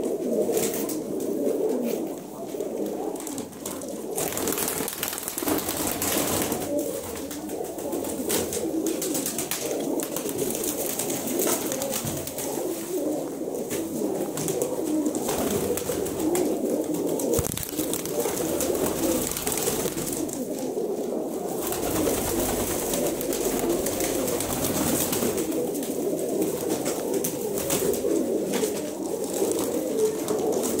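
A large flock of domestic pigeons cooing together in a dense, unbroken chorus.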